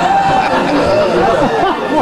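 Many people talking at once: a loud babble of overlapping voices with no single clear speaker.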